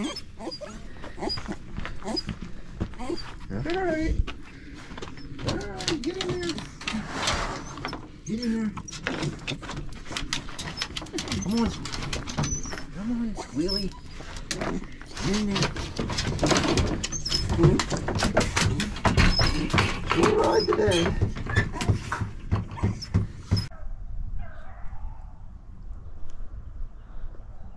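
Beagles whining and yelping in short rising-and-falling calls while they are handled and loaded into a plastic dog crate, with knocks and rattles from the crate and truck bed. Near the end it gives way to a quieter outdoor hush.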